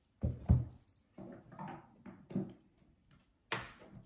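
A few knocks and thuds of objects being handled and set down, two close together near the start and a sharper one near the end, with faint rummaging between them: someone searching for a tarot card deck.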